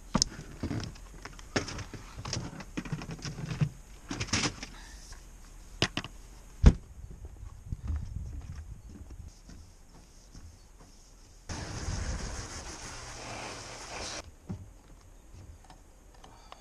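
Clicks, knocks and clunks of a motorhome's side locker door being handled and someone climbing onto the motorhome roof, with one sharp loud knock about halfway through. Near the end comes a steady hiss lasting a few seconds.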